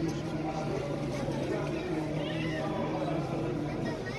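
Crowd of voices at once, with men's voices chanting prayer in long held notes.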